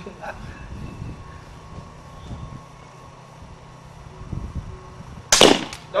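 About five seconds of quiet background, then a single sudden sharp crack of a rifle shot near the end, the balloon target bursting with it.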